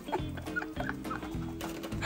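A quick series of short clucking calls over background music.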